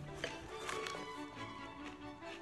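Background music with steady held tones, and a few faint crunches of crisp bran cereal being chewed.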